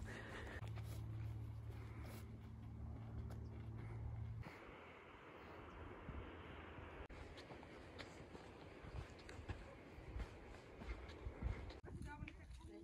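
Faint footsteps on a dry dirt trail over quiet open-air ambience, with scattered soft ticks. A low steady rumble in the first four seconds stops abruptly, leaving a faint even hiss.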